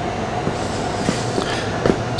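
Steady loud rushing machine noise with a faint constant whine and a few faint ticks.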